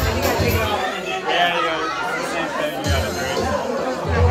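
Party crowd talking over music with a bass beat; the beat drops out for about two seconds in the middle and comes back near the end.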